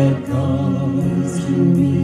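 A small vocal group, a man and two women, singing a slow song in harmony over electronic keyboard accompaniment, held notes wavering with vibrato.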